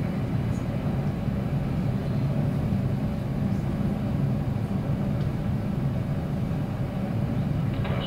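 Steady, deep noise of the Saturn V's five F-1 first-stage engines at the Apollo 11 liftoff, as launch-film audio played back over loudspeakers in a room.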